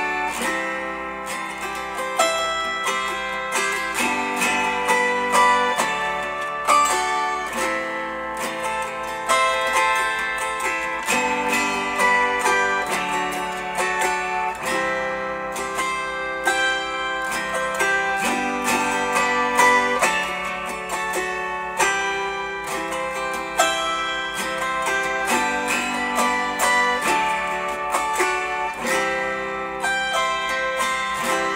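A 15-chord autoharp strummed, playing a tune with the chords changing every second or two.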